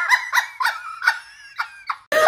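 A woman's high-pitched, wheezing laughter in a run of short gasping bursts, held behind her hand, fading toward the end.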